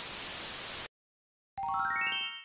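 TV-static hiss sound effect for about a second, cutting off suddenly; after a short silence, a quick upward run of ringing pitched notes, a chime-like flourish.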